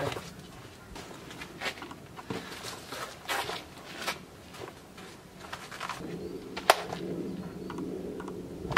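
Bags and gear being handled and loaded onto a small wagon: scattered light knocks and rustles, with one sharp knock late on, over a low steady hum that starts about six seconds in.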